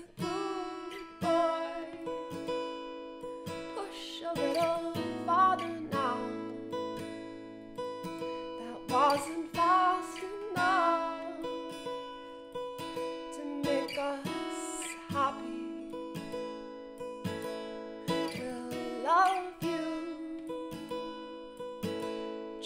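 Acoustic guitar played solo, chords strummed and picked with ringing sustained notes.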